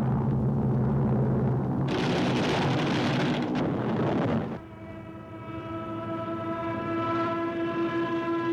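Old cartoon film soundtrack: low held orchestral notes, then a loud rushing noise of about two and a half seconds from the air-combat sound effects, then a single long horn-like note that swells near the end.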